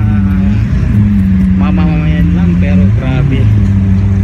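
Lamborghini V10 engine running at low revs close by, its pitch lifting briefly near the start and again about three seconds in.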